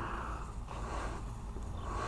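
Quiet outdoor background: a steady low rumble and faint hiss, with no distinct events.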